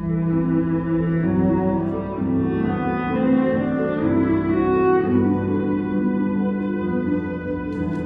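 Slow classical music: a held, singing cello melody over a soft string accompaniment, moving from one long note to the next. A few faint taps come near the end.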